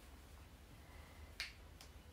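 Near silence with a single sharp click about one and a half seconds in, followed by a couple of fainter clicks.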